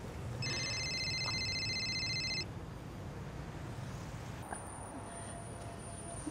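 Telephone's electronic ringtone trilling for about two seconds near the start, over a steady low rumble of street traffic. Later a thin, very high whine comes in.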